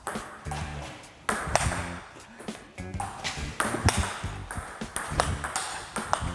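Table tennis ball being hit with a bat and bouncing on the table: a series of sharp knocks about once a second, over background music.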